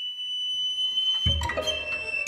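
Contemporary chamber ensemble music: a single high note held thin and steady, then a little over a second in a sudden loud attack with a deep low thud, followed by several short sharp accents.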